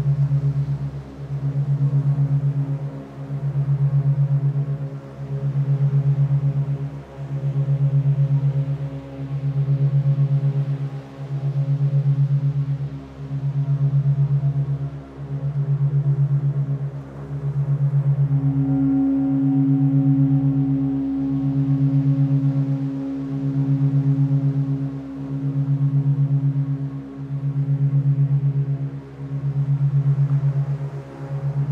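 Meditation drone built on a low hum tuned to 136.1 Hz, beating eight times a second as a monaural beat and swelling and fading about every two seconds. A higher steady tone joins a little past halfway.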